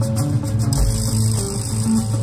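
Live rock band playing, with a steady, held bass guitar line under electric guitar and rapid high percussion ticks. A hiss of cymbals sets in about a second in.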